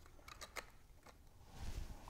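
Faint handling of cardstock paper pieces, with a few light ticks about half a second in as a piece is pressed into place.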